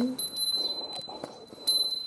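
A small hand bell, of the kind rung to accompany goeika hymn singing, struck twice: a high, lingering ring starts at the beginning and is struck again about a second and a half in.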